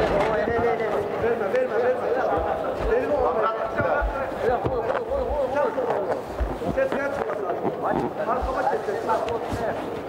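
Men's voices shouting and calling over one another, loud and steady throughout, with a few dull low thumps mixed in.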